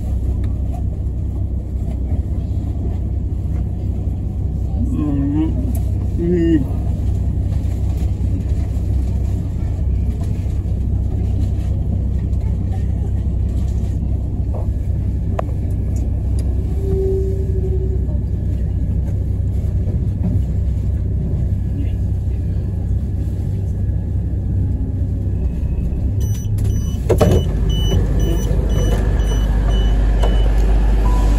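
Steady low rumble of a train standing at a station platform, with voices in the background. Near the end comes a thump, followed by repeated high electronic beeping.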